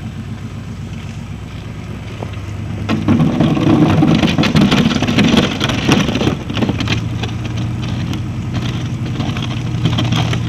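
Pickup truck engine running while its plow blade pushes snow. From about three seconds in, a louder stretch of crunching and scraping as the blade drives through the snow, easing off after about six and a half seconds, with the engine steady underneath.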